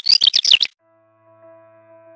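Male black redstart singing: the close of its pressed, scratchy song phrase, a quick run of high warbled notes that stops under a second in. Soft piano music then fades in.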